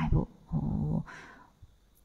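A woman's voice: a short spoken syllable, then a drawn-out steady vowel or hum held for about half a second, and a breath just after one second in.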